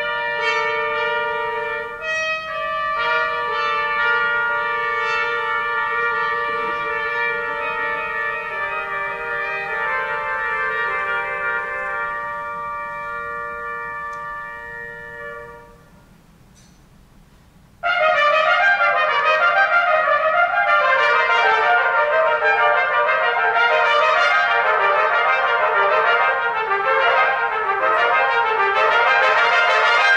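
Trio of trumpets playing: held, overlapping notes that swell and then fade out about fifteen seconds in, a brief pause, then a loud passage of rapid notes from all three that stops sharply near the end.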